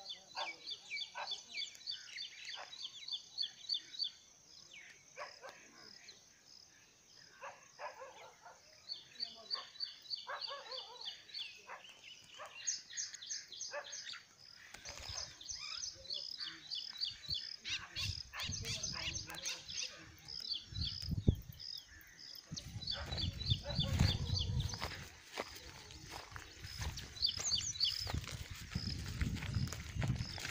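Birds calling in rapid series of short, high chirps, repeated in bursts. From about halfway a low rumble of wind or handling on the microphone joins in.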